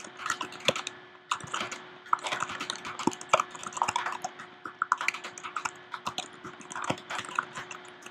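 Typing on a computer keyboard: a run of irregular key clicks as a sentence is typed out, with short pauses between bursts.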